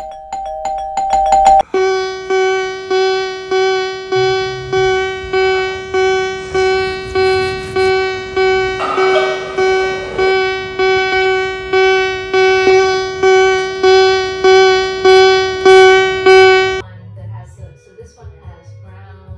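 An electronic tone at one fixed pitch, struck over and over in an even pulse of about three beats every two seconds, edited over the video and cutting off abruptly near the end. It is preceded by a short two-note chime with fast clicking, like a doorbell.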